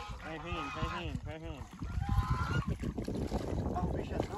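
Distant shouting voices, then water splashing and sloshing as people wade through a muddy reservoir dragging a fishing net.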